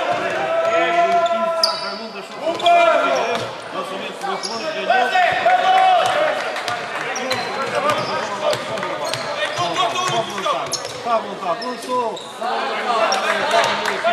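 A basketball game on a hardwood court in a large indoor hall: the ball bounces, sneakers squeak briefly, and voices call out on and off.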